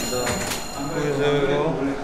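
A person's voice without clear words, with a high ringing tone fading out in the first half-second.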